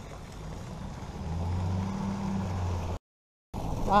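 Delivery truck engine running close by, a low steady hum that grows louder about a second in. The sound cuts out completely for about half a second near the end.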